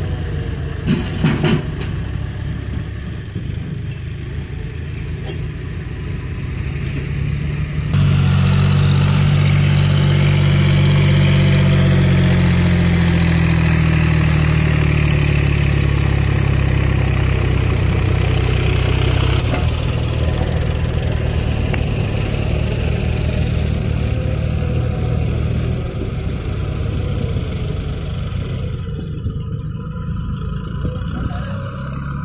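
John Deere 5050D tractor's three-cylinder diesel engine working under load as it drags an implement through sandy soil. It grows markedly louder from about eight seconds in, its pitch sagging slightly, then drops back for the rest of the time.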